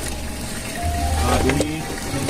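A man speaking briefly over background music with steady held notes.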